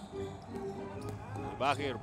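A basketball bouncing on a hardwood court, a few short knocks, over faint background music.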